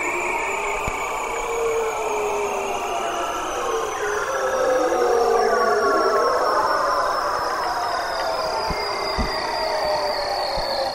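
Bearded seal singing underwater, eerie: long, slowly falling warbling trills, several overlapping, with one high trill gliding steadily downward throughout.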